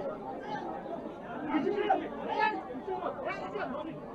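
Chatter of several people talking at once in a crowd, softer than a lead voice.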